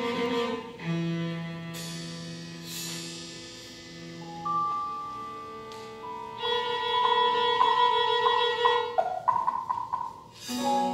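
Live contemporary chamber music: violin and cello holding long sustained notes, punctuated by sharp struck accents from piano or percussion. In the second half the music grows louder, with a run of quick repeated struck notes over the held strings.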